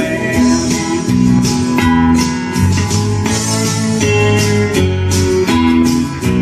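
Electric guitar strumming chords in a steady rhythm, the chords changing every second or so, in an instrumental break between sung lines of a country song.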